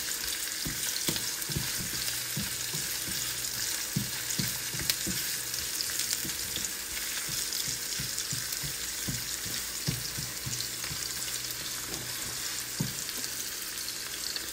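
Onions frying in oil in a nonstick wok, a steady sizzle, with the irregular knocks and scrapes of a spatula stirring them against the pan.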